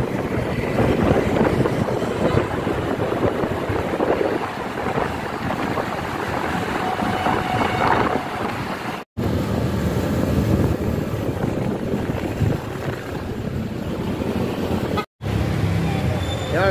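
Wind buffeting the microphone of a motorcycle riding in city traffic, over the engine and road noise. The sound drops out briefly twice, about nine seconds in and just before the end.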